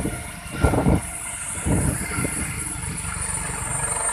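Helicopter's turbine engine running with a high whine that slowly drops in pitch over a low rumble, as it winds down after landing. A couple of short thumps come in the first two seconds.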